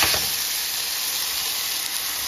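Cubed potatoes frying in oil in a nonstick skillet, with chicken juices poured into the pan boiling off in a steady hissing sizzle.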